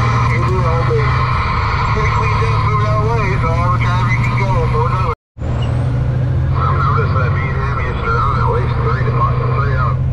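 Semi truck's diesel engine droning steadily inside the cab at highway speed, with indistinct voices over it. The sound cuts out completely for a moment about five seconds in.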